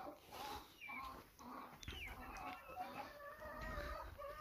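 Domestic chickens clucking faintly, a scatter of short calls through the whole stretch, with a few higher chirps mixed in.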